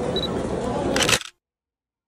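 Busy indoor public-space ambience: indistinct voices and people walking, ending a little over a second in with a short sharp click, after which the sound cuts off abruptly to silence.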